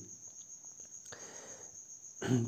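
Faint, steady high-pitched tone over low background noise.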